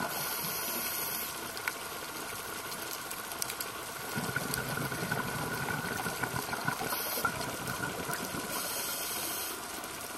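Underwater sound picked up by a diver's camera in its housing: a steady watery hiss with a faint high whine, broken by bursts of scuba exhaust bubbles at the start and twice near the end.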